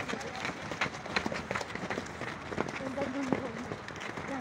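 A group running on a dirt ground: many quick, uneven footfalls, with voices in the background and a brief call about three seconds in.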